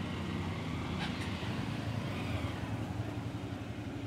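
A motorcycle engine running steadily, heard as a low, even hum over street noise.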